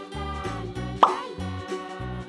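Light children's background music with a repeating bass line and held notes, and a single short plop sound effect about a second in.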